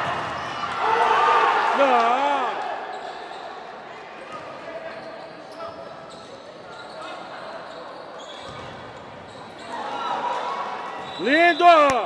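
Indoor futsal game sound in an echoing gym: spectators' and players' voices, with a few faint knocks of the ball and play on the court in a quieter middle stretch. Loud, arching shouts come about eleven seconds in.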